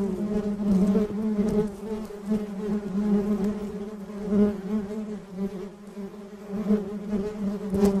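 Honeybees buzzing: a steady, droning wing hum that wavers in pitch and swells and fades in loudness.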